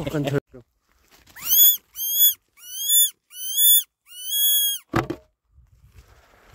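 A fox call, used to lure foxes in, sounding five high-pitched squeals in quick succession. Each squeal glides up and then holds its pitch, and the last is the longest. A short knock follows right after.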